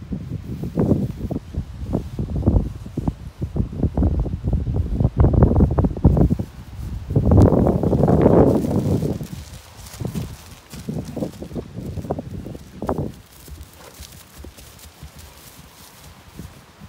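Two horses moving over grass pasture: irregular dull hoof thuds and rustling, mixed with the footsteps of a person walking with them. There is a louder rough rustling stretch about seven seconds in, and it grows quieter near the end.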